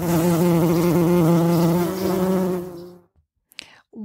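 A bee buzzing: one steady, slightly wavering drone that starts suddenly and fades out after about three seconds.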